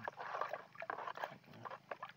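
Metal spoon stirring a foamy fertiliser solution in a basin: water sloshing, with a few light clicks.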